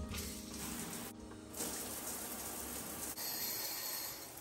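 Shower running after its single-handle valve is turned on: water spraying from the showerhead as a steady hiss, briefly thinner about a second in.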